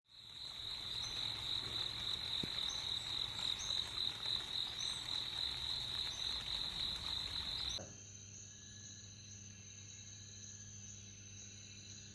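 Night-time insect chorus: a steady, slightly pulsing high trill with a few short chirps above it. About eight seconds in it cuts off abruptly to a much fainter ambience of thin, steady high tones.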